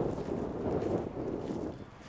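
Low, uneven rumbling roar of a departing Airbus A380's four jet engines as the airliner climbs away, wavering in strength, then falling off sharply near the end.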